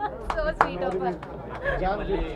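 Women laughing amid voices and chatter, with a single sharp click a little over half a second in.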